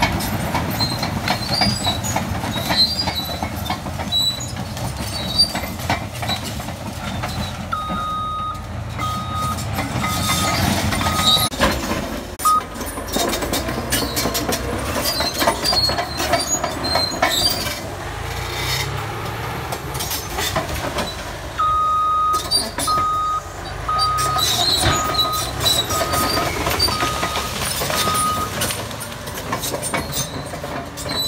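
Large Caterpillar crawler bulldozer clearing brush: the diesel engine runs under load while the steel tracks clank and squeak. Its backup alarm beeps steadily in two runs, one about a third of the way in and one through most of the last third.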